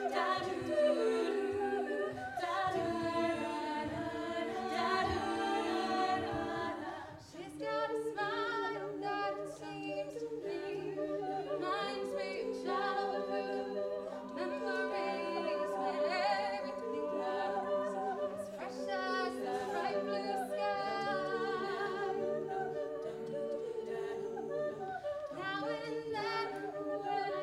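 All-female a cappella group singing live in layered harmony, with low parts holding long notes under the melody. About seven seconds in the sound dips briefly. After that, a regular beat of vocal percussion runs under the voices.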